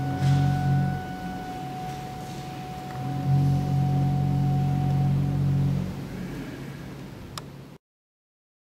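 Church pipe organ holding the closing chords of a piece, with long low pedal notes under a high held note. The high note stops about five seconds in, and the last low chord ends about a second later and fades away in the reverberant church. A faint click comes just before the sound cuts off.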